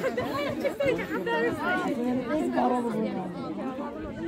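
Several people talking and calling out over one another in overlapping chatter.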